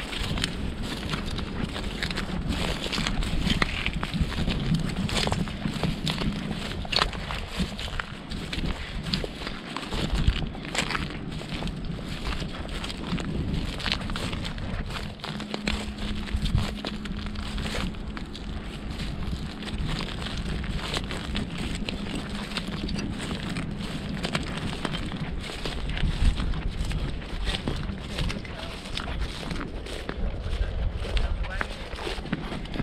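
Footsteps crunching over shell-strewn sand and marsh grass: a dense, irregular run of crisp crunches and crackles.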